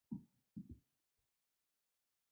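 Near silence with two soft, low thumps in the first second.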